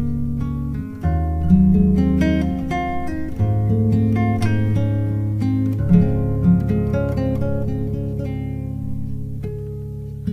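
Background music played on an acoustic guitar: a run of plucked notes over held bass notes.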